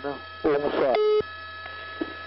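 Police radio traffic: a short voice transmission ending in a brief beep about a second in, which cuts off sharply, over the radio channel's steady hum.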